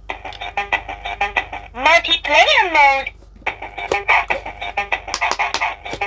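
Electronic pop-it game's built-in speaker playing synthesized sound effects and music. A warbling, voice-like effect rises and falls about two seconds in, followed by a fast beeping tune as a new round starts.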